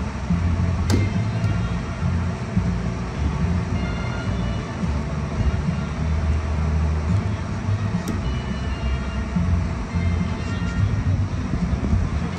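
Wind buffeting the microphone: an uneven low rumble, with two sharp clicks, one about a second in and one near the two-thirds mark.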